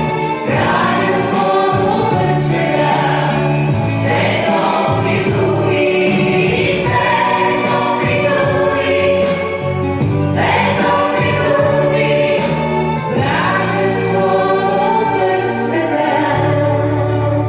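Live music: several voices singing together over instrumental accompaniment, with a held bass line that moves to a new note every couple of seconds.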